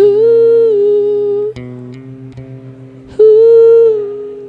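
A man's voice holds a loud, wordless hummed note into the microphone twice, once for about a second and a half and again near the end. Under it, electric bass guitar notes sound steadily in an experimental rock song.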